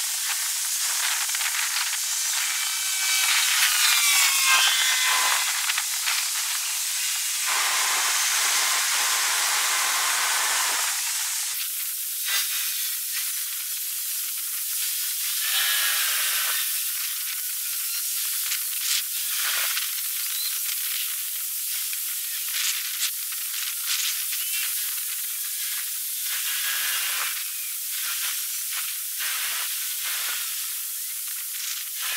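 Outdoor evening ambience: a steady, high-pitched hiss runs throughout. Bursts of chirping, like small birds, come about 3 to 5 seconds in and again around 16 seconds, with scattered faint clicks.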